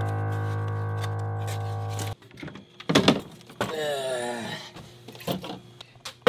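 A held keyboard chord that cuts off sharply about two seconds in, then knocks and clicks of a styrofoam takeout clamshell being handled and opened, with a brief wavering pitched sound near the middle.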